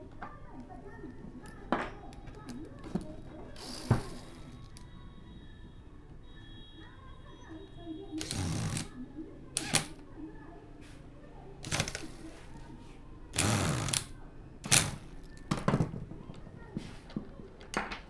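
Cordless impact driver run in several short bursts, each a second or less, driving the screws that fasten a guard onto an angle grinder's head. Before the bursts come small clicks and knocks of metal parts being handled.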